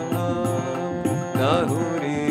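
Harmonium playing sustained chords under a devotional melody, with a man's singing voice that bends through an ornamented phrase about one and a half seconds in.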